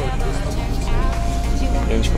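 Steady low road and engine drone of a moving Mercedes minibus heard from inside its cabin, with background music and faint voices over it.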